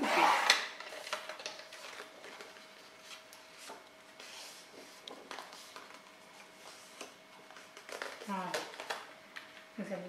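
A paper trimmer's blade sliding along its rail and cutting through black card stock in one short swish at the very start. This is followed by faint rustling and light taps as the card is handled.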